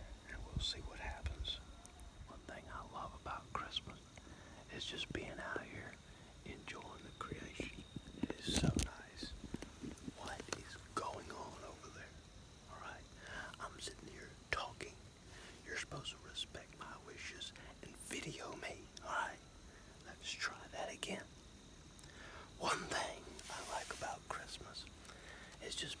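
A man whispering in short phrases with brief pauses.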